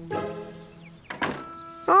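A door shutting with a single thunk a little over a second in, over light background music.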